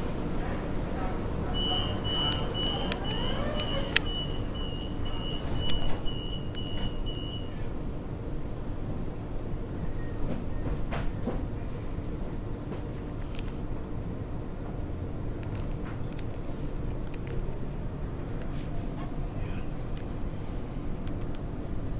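Inside an electric suburban train carriage: a steady low rumble and hum, with a run of evenly spaced high electronic beeps, about two a second, lasting some six seconds, the carriage door-closing warning. A few sharp clicks and knocks sound through it.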